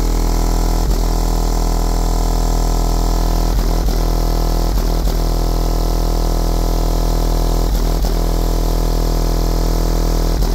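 A car-audio subwoofer system in a truck holding one steady, deep bass note at about 136 dB on the meter, so loud that it comes through as a distorted, buzzing drone. Brief crackles break in a few times, often in pairs.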